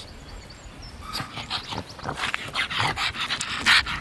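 A pug sniffing and snuffling at the ground right by the microphone: a quick, irregular run of short breathy puffs that starts about a second in.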